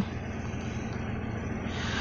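Datsun redi-GO's engine idling steadily, a low even hum heard from inside the cabin.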